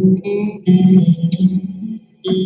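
Electric guitar playing a short phrase of chords, with a brief break about half a second in.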